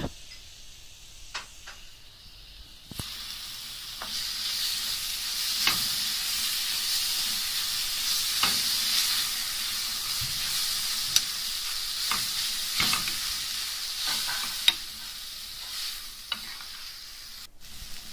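Chopped tomatoes and onions sizzling in hot oil in a frying pan as the tempering base cooks, with a metal spoon stirring and scraping against the pan now and then. The sizzle is faint for the first few seconds, builds to a steady hiss, and eases off near the end.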